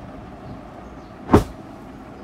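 A folded cloth bedsheet thrown down onto the floor: one short, loud thump of fabric about a second and a half in.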